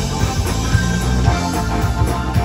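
Southern rock band playing live, with electric guitar and electric bass over a steady beat.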